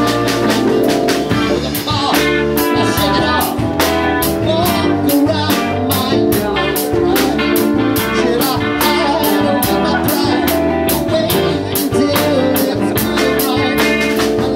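Live rock band playing: guitars and keyboard over a steady drum-kit beat, with a man singing.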